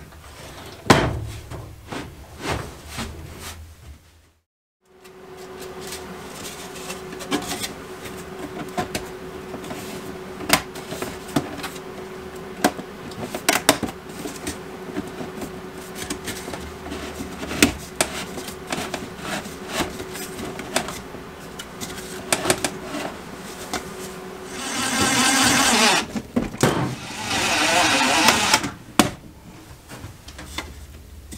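Metal ductwork and flexible aluminium duct being handled and fitted, with many light clanks and knocks over a steady hum. Near the end a cordless drill/driver runs twice, first for about a second, then for about two seconds.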